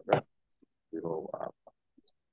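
Brief, unclear voice sounds over a video-call line: a short burst right at the start, then about half a second of indistinct voicing around the middle, with silence in between.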